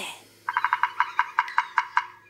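Woodpecker drumming on a tree trunk, as a cartoon sound effect: a rapid, even run of sharp knocks, about ten a second, starting about half a second in.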